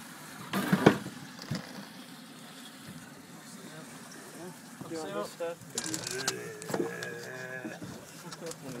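A sharp thump about a second in as a large red snapper hits the boat's fibreglass deck, with a few more sharp knocks of the fish on the deck later on. Indistinct voices and a drawn-out voiced sound come in the second half.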